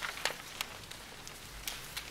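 Quiet room tone with a few faint, sharp clicks scattered through it.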